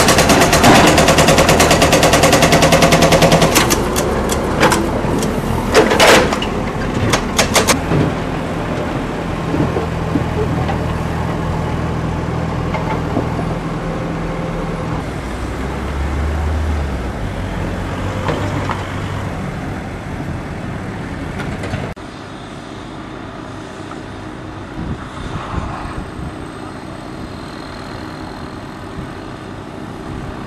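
Construction-site machinery and trucks: diesel engines of the trucks and a backhoe loader running. A loud, rapid, regular rattle sounds for the first few seconds, then several sharp knocks. From about two-thirds of the way through it is quieter.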